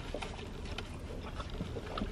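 Low steady rumble inside a car cabin, with a few faint small clicks and rustles.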